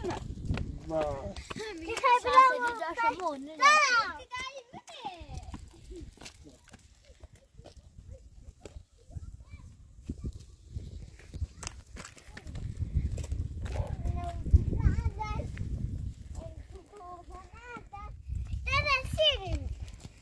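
People talking, among them a child's high voice, over the first few seconds and again near the end. In between come footsteps on stony ground and a low rumble on the microphone.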